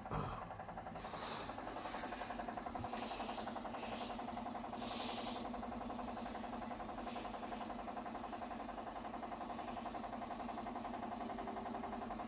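A steady, fairly quiet machine hum with a fast, even flutter. Over it come a few soft rustles of bedding in the first five seconds.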